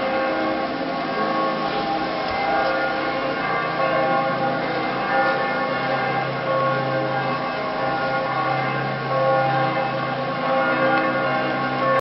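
Church bells ringing continuously, many bell tones overlapping in a dense, steady peal.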